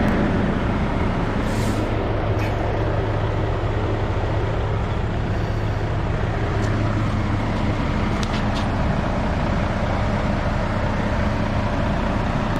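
Vehicle engine idling steadily with a low hum, with a few faint clicks about seven and eight and a half seconds in.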